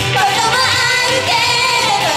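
Young female voices singing a Japanese idol pop song live into microphones over the full pop accompaniment. A long note is held, wavering, through the middle.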